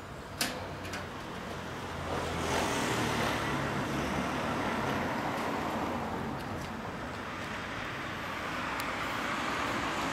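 Kawasaki Zephyr 1100's air-cooled inline-four idling steadily through a MID-KNIGHT aftermarket exhaust, with street traffic around it. A vehicle passes in the middle, swelling and fading over a few seconds.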